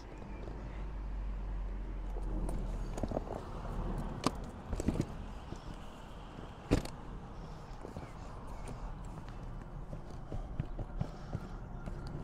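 Motorcycle tank bag being handled and pressed onto its tank-ring mount: rustling with a few sharp plastic clicks, the loudest about seven seconds in, over a steady low rumble.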